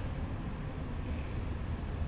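Steady low background rumble with a faint even hiss, no distinct events.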